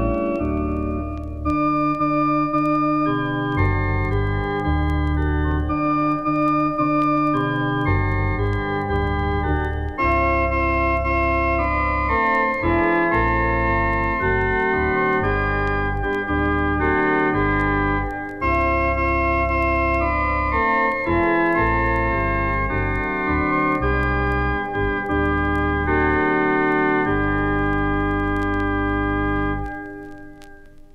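Organ playing a Christmas carol arrangement in slow, sustained chords over a deep, steady bass, closing on a held final chord that stops right at the end.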